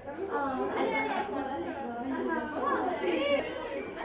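Indistinct chatter of several voices talking at once, with no one voice clearly in front.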